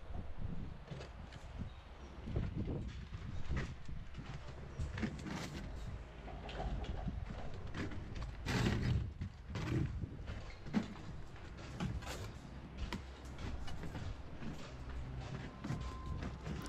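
Scattered knocks, taps and scrapes of bricklayers working at a solid concrete block wall while the string line is set up for the next course. A longer, louder burst comes about halfway through.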